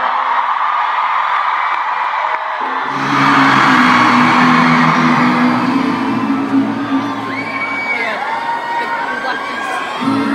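Arena concert crowd cheering and screaming over live music. About three seconds in, the sound jumps to a different recording, with steady low synth or bass tones under the crowd's screams.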